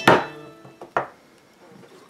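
Two knocks on a hard work surface as the hands handle the clay: a loud one at the very start with a brief ring, and a weaker one about a second later.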